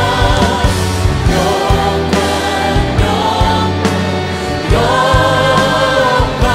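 Live worship band and group of singers performing a song: several voices hold sung notes over bass and regular drum hits.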